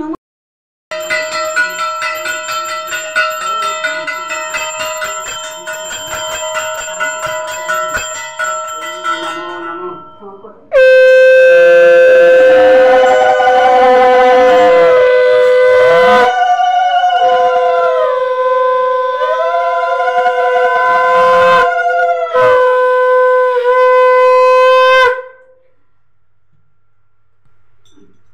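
A hand bell rung rapidly for about nine seconds during a Hindu puja, then a conch shell (shankha) blown loud in three long blasts with a wavering pitch.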